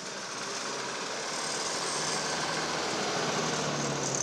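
Heavy six-wheel vacuum tanker truck (sewage truck) driving slowly past with its diesel engine running, a steady engine sound that grows gradually louder as it comes closer.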